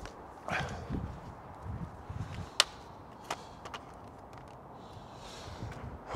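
Quiet handling sounds: a few soft low thumps and rustles, then several sharp clicks, the loudest about two and a half seconds in.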